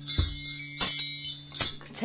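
Wind chimes jingling in about three short, bright bursts, with a soft low thump at the first and a faint steady low hum underneath.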